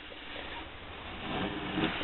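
Low, steady background hiss with no distinct sound event.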